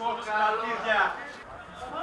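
A man's voice for about the first second, speaking or calling out, then low outdoor background noise.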